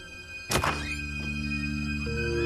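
A door being opened, with one sharp thunk about half a second in, followed by music chords held steady under it.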